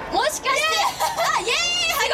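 Speech only: high-pitched women's voices talking through handheld microphones, with a high drawn-out exclamation near the end.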